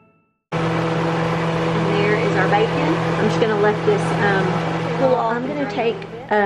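Bacon frying in a pan, a steady loud sizzle that starts abruptly about half a second in, over a steady low hum.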